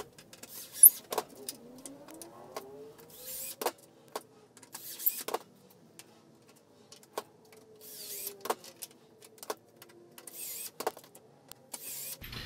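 Cordless drill driving screws through steel butt hinges into plywood in several short runs, with sharp clicks of hinges and screws being handled in between.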